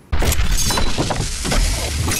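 Logo intro sting: a sudden crash-like sound effect hits just after the start, with music running underneath it.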